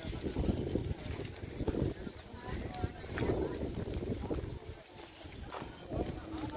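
Indistinct voices of people talking in the background, with wind rumbling on the microphone.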